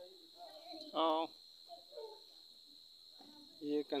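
A steady, high-pitched insect trill, typical of crickets, under a man's brief speech.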